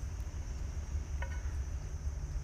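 Insects chirring in a steady, even high-pitched drone over a low rumble, with one faint click about a second in.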